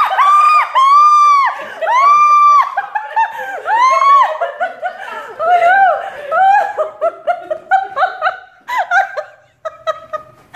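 A woman shrieking in several long, high-pitched screams, then breaking into quick bursts of laughter.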